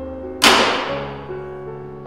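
A plate of sweets knocked from a hand hits the floor: one sudden loud crash about half a second in, fading over about half a second, over soft piano background music.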